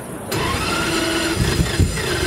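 Ferrari 250 GT California's V12 being started: the starter begins cranking about a third of a second in, and the engine starts firing near the end.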